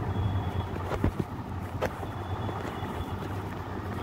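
Steady low background rumble and hum, with a few short clicks about a second in and again near two seconds.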